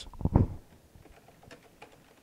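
Typing on a computer keyboard: a quick run of louder key clicks at first, then fainter, irregular keystrokes.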